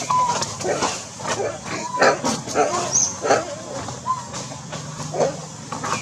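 Macaques calling: a run of short squeaks and grunts, with a few brief, steady coo-like notes.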